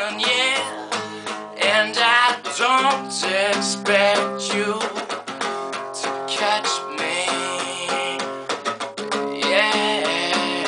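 Nylon-string classical guitar strummed in a steady chord rhythm, with a man singing over it for the first few seconds and again near the end.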